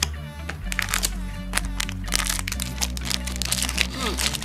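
A foil booster-pack wrapper crinkling and crackling in the hands in quick bunches, heaviest in the second half, over background music with a steady low bass line.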